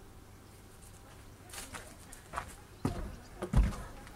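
Soft outdoor background at first, then footsteps and handling knocks coming close to the microphone, growing louder over the second half, with two heavier low thumps near the end.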